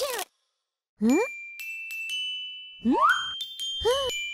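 Cartoon sound effects and music. A brief swish at the start, then two rising swoops, each followed by bright, sustained chime tones that ring on.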